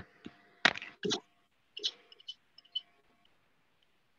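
A few short clicks and knocks, the loudest a little under a second in, then several soft high ticks around the two-second mark.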